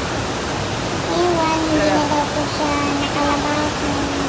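Steady roar of Batad Falls, a tall waterfall pouring into a rocky pool. A high-pitched voice is heard over it from about a second in.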